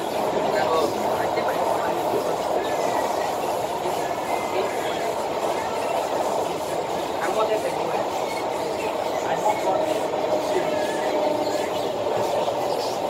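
Cabin noise of an SMRT Kawasaki Heavy Industries C151 metro train running between stations: a steady rumble of wheels and running gear. A faint steady whine comes in over the rumble in the second half.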